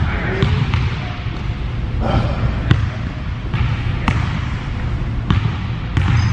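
Basketball bouncing on a hardwood gym floor during a pickup game, a handful of irregularly spaced thuds over a steady low rumble of room noise.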